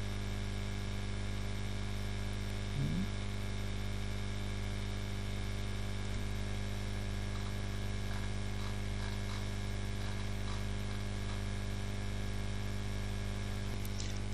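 Steady electrical mains hum with a faint static hiss from the recording chain, with a short, low blip about three seconds in.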